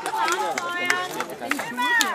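Several people talking over one another, with a few short clicks among the voices.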